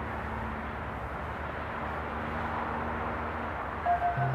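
Steady field-recording ambience: a low rumbling wash of noise with a faint steady hum underneath. A synth note comes in at the very end.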